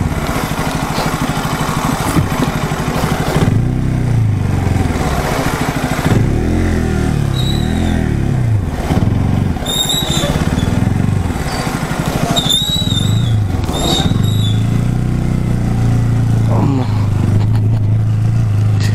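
Sport motorcycle engine at low speed, rising and falling in pitch as the throttle is opened and closed over a rutted, muddy track. A few short high squeaks come in the middle.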